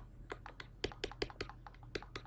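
Computer keyboard keys tapped in a quick, irregular run of about a dozen light clicks.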